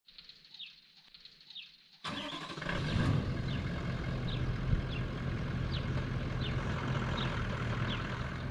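Short falling chirping calls repeat every half second or so; about two seconds in, a vehicle engine comes in abruptly and runs steadily, a little louder after a moment, with the chirps going on over it.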